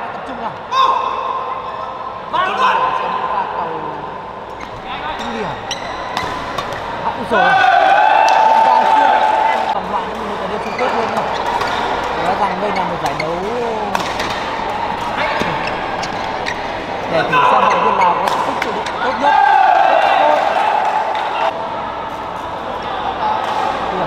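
Badminton rally in a large indoor hall: sharp racket hits on the shuttlecock at irregular intervals, with voices talking and shouting throughout, loudest in two stretches about a third of the way in and near the end.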